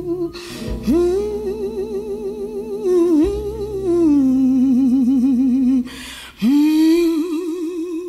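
A female gospel singer hums or moans wordlessly, sliding up into long held notes with a wide vibrato and breathing between phrases. Low sustained organ and bass tones sit underneath.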